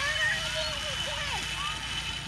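Faint, quiet child voices in the background, without clear words, over a thin steady high-pitched tone.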